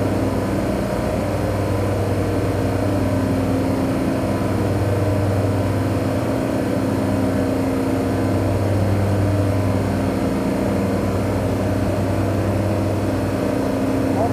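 Steady low hum of running machinery with a few constant tones in it, even and unchanging.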